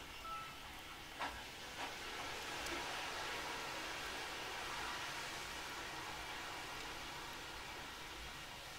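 Two quick clicks of a computer mouse or touchpad button, a little over a second apart, then a faint steady hiss.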